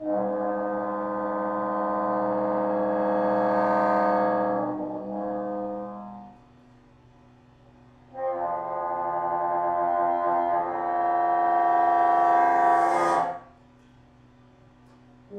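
Solo bassoon playing two long held notes, each lasting several seconds, with a short gap between them. The second note swells louder and cuts off suddenly near the end.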